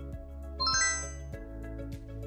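A quick chime sound effect of four bright bell-like notes stepping upward a little over half a second in, marking the end of the quiz countdown. It plays over steady background music.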